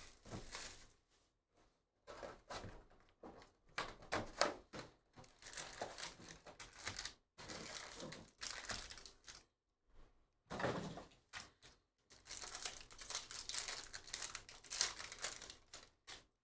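Cellophane shrink wrap crinkling and tearing as it is stripped off a trading-card hobby box. Then the box is opened and its foil packs are handled, in irregular rustling bursts with short pauses between them.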